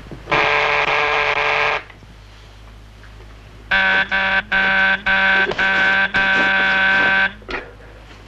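Electric door buzzer rung once for about a second and a half, then again about two seconds later in a run of insistent presses with short breaks between them.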